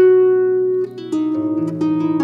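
Solo harp being plucked: a note struck at the start rings on for about a second, then a run of new notes, with lower bass notes joining, is plucked from about a second in, each left ringing over the others.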